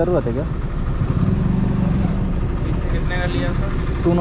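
Motorcycle engine idling steadily while the bike stands still.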